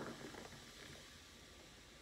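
Faint pour of sparkling mineral water from a glass bottle into a glass of michelada mix, fading to near silence about half a second in.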